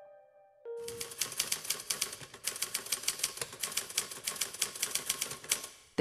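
Typewriter keys clacking in a rapid, uneven run, starting about a second in and stopping just before the end, a sound effect for text being typed out on screen. A last piano note fades away at the start.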